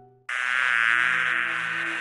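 A loud, dense, wavering sound effect cuts in suddenly about a quarter second in and holds, laid over soft background music.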